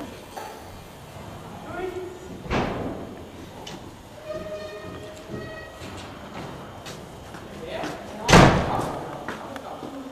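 A heavy thump about eight seconds in, the loudest sound, echoing through the large hall, with a smaller knock earlier; faint voices murmur in between.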